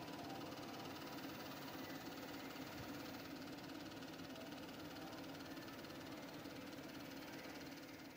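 A faint, steady mechanical whirring with a low hum underneath, dying away near the end.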